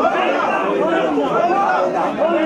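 Crowd chatter: many men's voices talking over one another without a pause.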